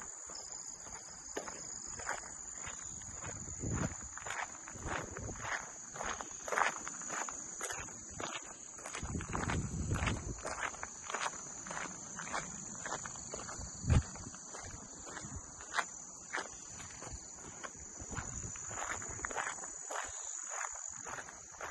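Footsteps and rustling as someone pushes through tall dry weeds and brush, over a steady high insect chorus. One louder thump comes about two-thirds of the way through.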